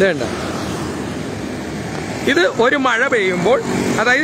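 Road traffic noise, a steady rushing hiss from passing vehicles including a motor scooter. A man's voice speaks over it about two seconds in.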